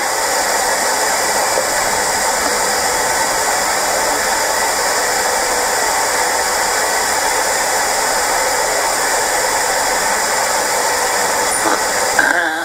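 Steady, loud rushing hiss with no pitch or rhythm, unchanging throughout.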